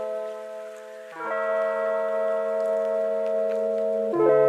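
Intro background music of sustained held chords, with a new chord entering about a second in.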